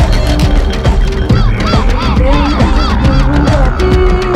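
Tribal-electronic dance track with heavy bass and drums; through the middle a quick run of short, arching, honk-like calls, about three a second, sounds over the beat.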